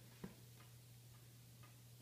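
Near silence: room tone with a steady faint hum, one small click about a quarter second in and a couple of fainter ticks later.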